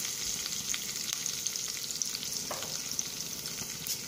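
A tempering of dried red chillies, seeds, green chilli and freshly added crushed garlic frying in hot oil in a small pan, sizzling with a steady hiss and a few faint crackles.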